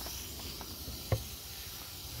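Garden hose spray nozzle running steadily, the water spray hissing onto the potting soil of a newly potted tree. A small knock sounds once, a little past halfway.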